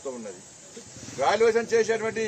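A man speaking, with a short pause about a second long in the middle, over a steady faint hiss.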